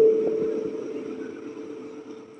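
A single steady ringing tone from the hall's public-address system, the feedback ring of the handheld microphone through the loudspeakers, fading away over about two seconds.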